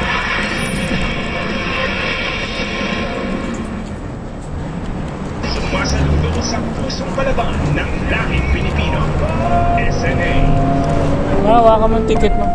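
Music fades out a few seconds in, giving way to a bus's engine rumble inside the passenger cabin, with people's voices over it.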